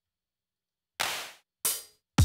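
Two drum-machine samples triggered from a computer keyboard: a hand clap about a second in, then a short hi-hat hit just over half a second later.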